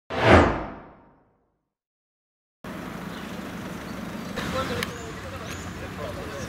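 An intro swoosh sound effect that sweeps down in pitch and dies away over about a second, followed by silence. From about two and a half seconds in there is outdoor background noise with faint voices and a couple of sharp clicks.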